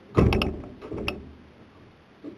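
Clicking from the dishwasher's mechanism: a clunk with a quick run of sharp clicks, then another couple of clicks about a second in.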